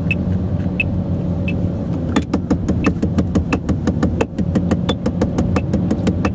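Electronic metronome clicking at 88 beats a minute, and from about two seconds in a drumstick tapping even sixteenth notes on a car's steering wheel in time with it, about six strokes a second. Underneath runs the steady road and engine noise inside the cabin of the moving car.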